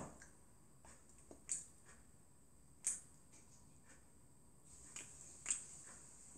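A child chewing a bite of a large raw apple close to the microphone: a few sharp, crisp crunches spaced a second or more apart, the loudest about one and a half and three seconds in.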